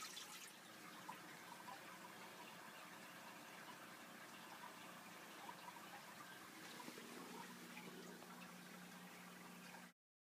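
Faint aquarium filtration noise: water trickling into the tank over a low steady hum. It cuts off suddenly just before the end.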